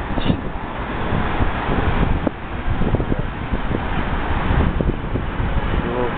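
Wind buffeting the microphone on the open deck of a ship under way: a steady, rough rush with an uneven low rumble.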